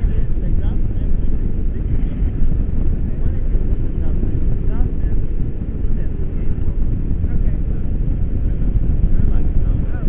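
Wind rushing over a selfie-stick action camera's microphone in paraglider flight: a steady, loud, low rumble.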